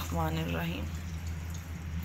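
Milk being poured from a steel vessel onto a heap of grated carrots in an earthenware pot: a soft, faint pouring splash, with a short snatch of voice in the first second.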